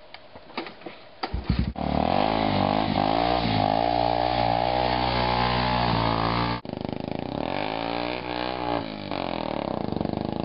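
A four-wheeler ATV engine comes in suddenly about two seconds in and runs with its revs rising and falling as the quad drives through shallow floodwater. It cuts out sharply past the halfway mark and picks up again a little quieter.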